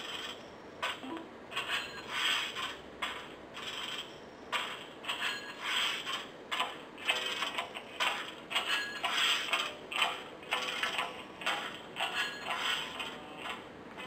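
Audio streamed over Bluetooth A2DP playing faintly through a small handheld Bluetooth speaker: a thin sound with little bass, coming in irregular bursts a few times a second.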